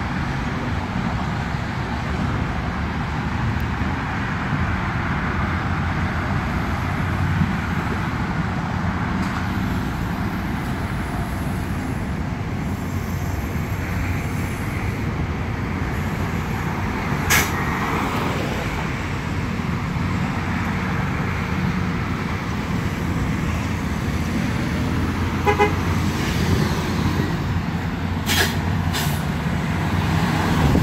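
Nova Bus LFS city bus pulling up to the curb and running at the stop, over steady road traffic noise. A short run of beeps sounds about 25 seconds in, and a few brief sharp sounds come about 17 seconds in and again near the end.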